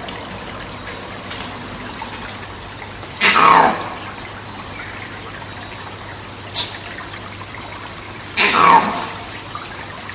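Monkey screams over a steady rainforest background hiss: two loud calls, each about half a second long and falling in pitch, about five seconds apart.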